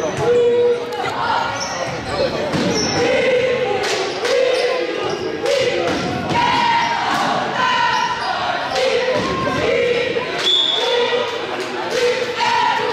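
A basketball dribbled repeatedly on a hardwood gym floor, the bounces echoing in the large hall, with voices calling over them throughout.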